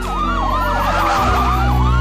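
Siren sound effect in a hip-hop music track: fast rising-and-falling yelps with a long, slowly falling tone, over a steady bass line.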